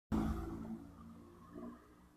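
Street traffic: a motor vehicle's engine, loudest as the recording begins and fading away over about a second, with a brief swell again near the end.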